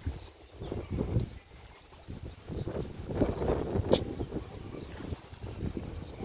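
Gusty wind buffeting the microphone in uneven rumbling surges, with a single sharp click about four seconds in.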